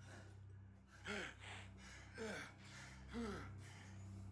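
A man's strained, gasping breaths: three pained heaves about a second apart, each rising and falling in pitch, over a low steady drone.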